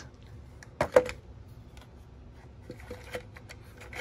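Hard plastic clicks from handling an ice-fishing flasher shuttle's adjustable arm as its side knobs are loosened: two sharp clicks about a second in, then a few faint ticks near the end.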